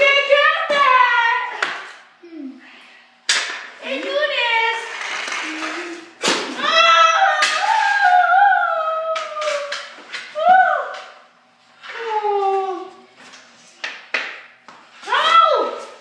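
A child's voice calling out in drawn-out, sing-song stretches that slide up and down in pitch, with short pauses between, and a few sharp knocks mixed in.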